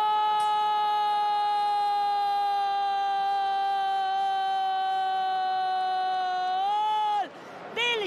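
Football commentator's long drawn-out goal cry, one sustained note held for about seven seconds, sinking slowly in pitch, lifting briefly and then cutting off near the end.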